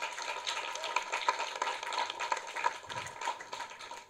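Audience applauding, a dense patter of claps well below the level of the speech, dying away near the end.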